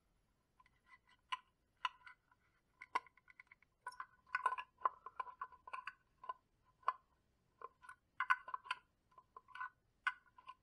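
Scattered small clicks and taps of plastic and metal being handled, at times several in quick succession: a panel-mount power connector being fed through the hole of a plastic project box and its nut threaded back on.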